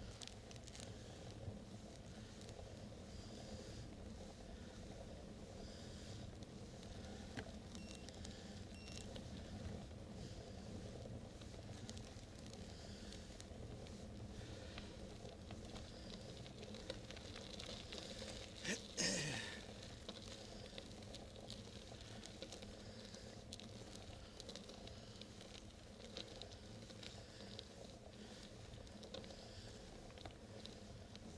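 Bicycle rolling along a paved road: faint steady tyre and wind noise, with a few small ticks and one brief, sharp, louder sound about nineteen seconds in.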